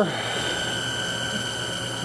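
Norton engine turned over by the electric drive of a Spintron test rig, running steadily with a hum and a faint high, steady whine, during a wear test of a hardweld cam follower.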